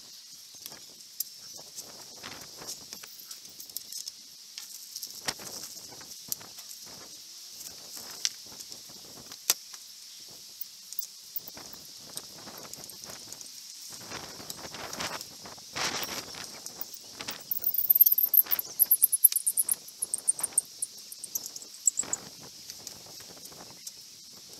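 Wooden coffee table frame being handled on a workbench: scattered light knocks and clicks of wood and hands, with heavier handling noise a little past the middle. A run of high-pitched chirps comes about three-quarters of the way in, over a steady high hiss.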